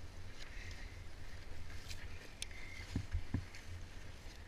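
Low rumble of wind on a head-mounted camera's microphone, with faint scuffs and clicks of gloved hands and boots on rock and dry grass. Two low thumps come about three seconds in, as boots land.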